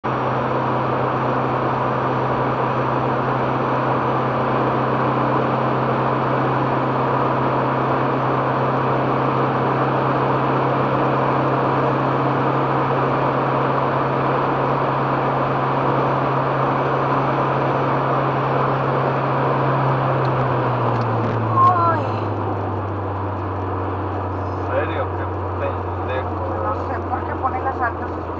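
Inside a car at highway speed: steady engine drone with tyre and wind noise. About 20 seconds in the drone drops in pitch and gets a little quieter as the car slows from about 175 to about 130 km/h, with a brief louder sound just after.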